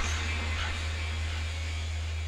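A steady low hum with a soft, even hiss above it.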